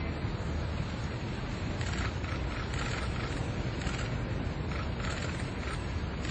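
Steady low rumble of wind on the microphone, with faint distant voices from about two seconds in.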